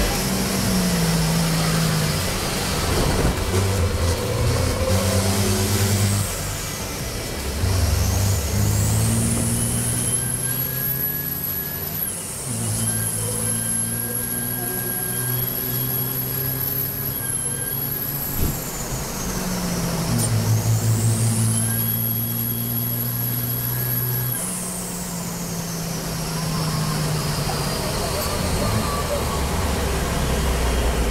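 Race truck's turbo-diesel engine heard from inside the cab at racing speed: its pitch climbs and steps down through gear changes. A high turbo whistle rises and holds under throttle twice, each time for several seconds, and falls away as the throttle is lifted.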